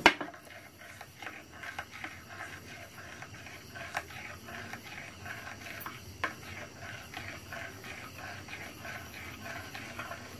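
Metal spoon stirring liquid in a small glass bowl: faint, quick clinks and scrapes of the spoon against the glass, a few a second, with a sharper clink about four seconds in and another about six seconds in.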